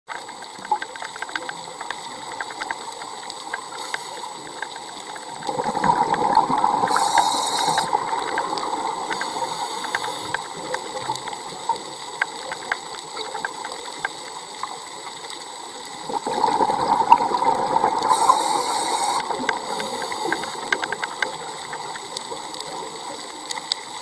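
Underwater scuba breathing: two long rushes of exhaled regulator bubbles, about five seconds in and again about sixteen seconds in, over a steady underwater hiss with faint scattered clicks.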